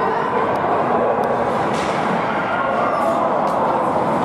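Echoing ice-rink game noise: a steady hubbub of shouting voices, with a few sharp clacks of hockey sticks hitting the puck.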